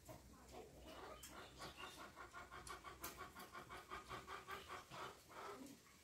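Faint, quick, rhythmic panting, about five breaths a second, running for a few seconds in the middle and then stopping.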